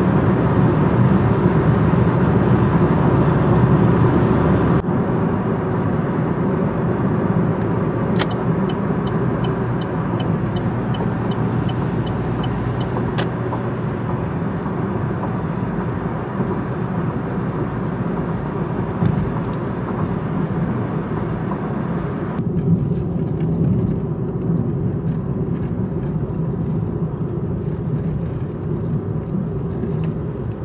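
Steady low road and engine rumble inside a moving car's cabin, changing abruptly twice where the driving clips are joined. About eight seconds in, a quick regular ticking runs for about four seconds.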